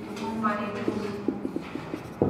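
Dry-erase marker writing on a whiteboard: a quick run of short taps and brief squeaks as words are written.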